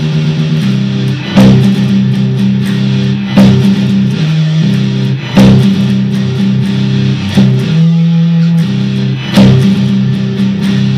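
Dean ML electric guitar playing sustained, distorted low chords in a metal style, with a loud accented hit about every two seconds.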